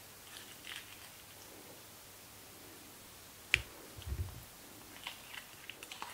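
Metal spoon working a ceramic bowl of chopped pico de gallo and spooning it onto nachos: faint wet clicks, then one sharp clink about halfway through, followed shortly by a soft low thud.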